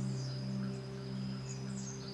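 Soft background music: a steady, sustained drone of held low tones, in the manner of an ambient pad or singing bowl.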